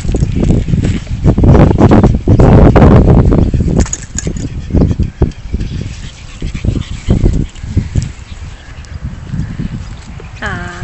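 Pug puppy sniffing and snuffling with its nose to the dirt, loudest in the first four seconds and quieter after, with short scuffs.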